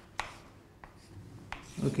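Chalk writing on a blackboard: three sharp chalk taps roughly two thirds of a second apart with faint scratching between them as short strokes of digits are drawn. A man says "OK" near the end.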